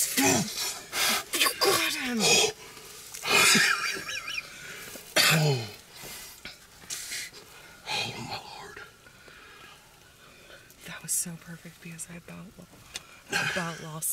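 Hushed, breathy whispering in short bursts, with a few brief low voiced murmurs between quieter pauses.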